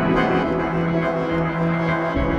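Ambient electronic synthesizer music: layered, sustained drones with a steady low tone held underneath.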